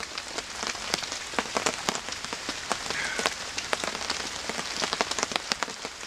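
Steady rain falling, with many separate drops ticking.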